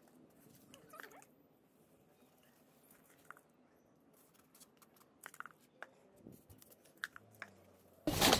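Near silence, with a few faint scattered rustles and soft clicks of potting soil being scooped and pressed in around seedlings.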